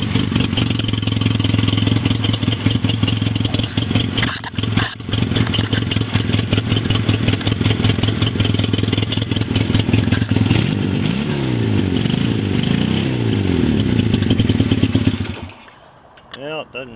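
Honda CA77 Dream 305's air-cooled parallel-twin engine running steadily just after a jump-start, with no odd mechanical noises. There are two sharp knocks with a brief dip about four to five seconds in, the engine speed swings up and down several times in the last few seconds, and the engine stops shortly before the end.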